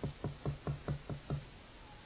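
A quick run of about eight knocks, roughly five a second, each with a short low ring, stopping a little over a second in.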